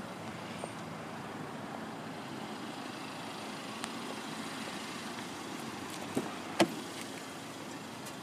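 Steady outdoor background noise with a few faint clicks, then a sharp click about six and a half seconds in as the car's driver door is unlatched and opened.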